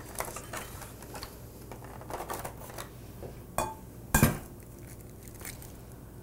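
An egg cracked against the rim of a glass mixing bowl: a sharp knock a little past the middle, with a lighter knock just before it. Light clicks and rustles of handling come before it.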